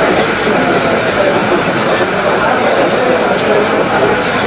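Loud, steady babble of many people talking at once in a crowd, with no single voice standing out.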